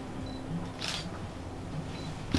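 A single short camera shutter click about a second in.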